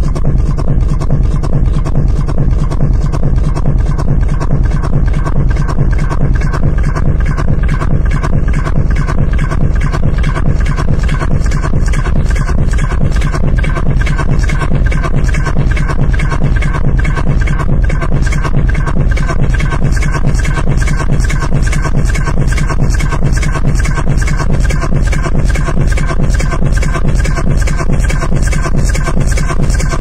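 Techno DJ mix: a steady, evenly pulsing kick-drum beat with heavy bass under a repeating synth pattern, running on without a break.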